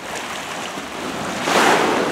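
Sea waves washing against a rocky shore, with one louder wave splash about one and a half seconds in.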